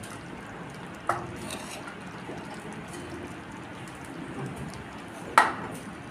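A metal ladle stirring thick, soft khichdi in a metal kadai, a faint wet churning over a steady low hiss. The ladle knocks against the pan about a second in, and again more sharply near the end.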